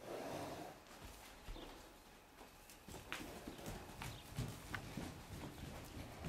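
Hoofbeats of a Peruvian Partblood filly and her grey mare on soft dirt footing: irregular, muffled thuds and knocks that become more frequent about three seconds in.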